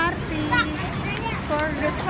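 High-pitched voices, like children calling and playing, in short bursts over steady low city street noise on a crowded sidewalk.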